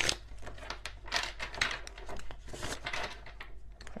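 A deck of tarot cards being shuffled by hand: irregular papery rustling and flicking.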